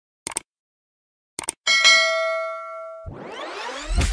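Subscribe-button sound effects: a short click, another click about a second later, then a bell-like ding that rings out for over a second. Near the end a rising whoosh leads into music.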